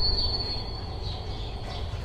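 Low mechanical rumble with a thin, steady high-pitched whine over it, both dying away: the whine fades out about halfway through and the rumble keeps falling in level.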